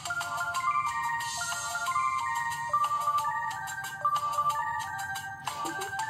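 Instrumental break of a cumbia backing track: a bright, synth-like melody moving in short held notes over a steady percussion beat, with no singing.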